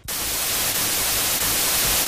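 Analog television static sound effect: a steady, even hiss of white noise that cuts in suddenly and holds level.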